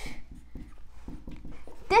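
Dry-erase marker scratching in short, faint strokes on a whiteboard as characters are written.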